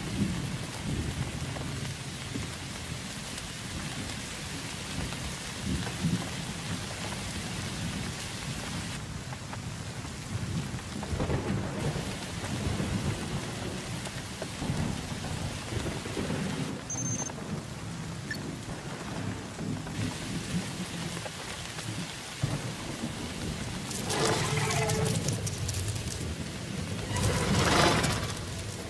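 Film soundtrack of a heavy rainstorm: steady pouring rain with a deep rumble of thunder underneath, swelling louder near the end.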